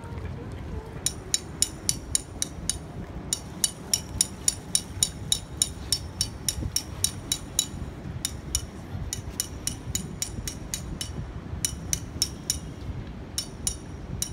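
A toddler in a float ring kicks and paddles in shallow pool water, making quick splashes about three to four a second, in runs with short pauses.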